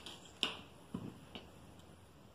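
Hands handling and pressing folded cloth on a table: a few faint, sharp clicks and taps, the loudest about half a second in.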